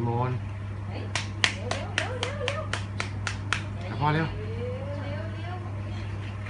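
A run of about ten sharp, even clicks, about four a second, made by a person calling a baby to come over.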